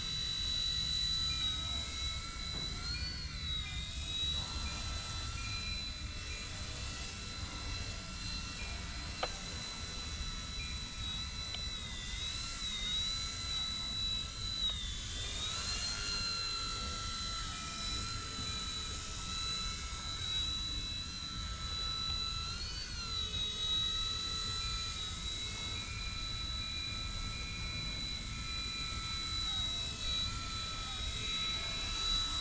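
Eachine E129 mini RC helicopter in flight: a steady high-pitched motor and rotor whine that dips and rises in pitch a few times as it manoeuvres, most noticeably about halfway through, over a low background rumble.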